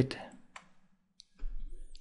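A computer mouse click, about half a second in, pressing the Fit Components button of the peak-fitting software. A low hum starts near the end.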